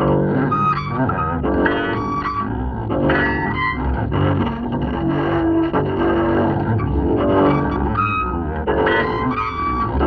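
Double bass playing free improvisation: dense, overlapping low notes with clusters of high overtones ringing above them about once a second.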